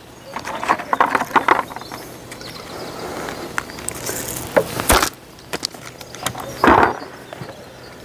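Bait catapult being loaded and fired to loose-feed pellets: small handling clicks about a second in, then a single sharp snap of the elastic and pouch just before halfway.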